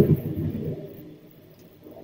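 A man's voice in a low, drawn-out hum that fades out within about the first second, followed by quiet room tone.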